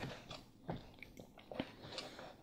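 Hands pressing Play-Doh into a plastic mold and handling the plastic tools: a few faint, irregular clicks and soft squishing rustles.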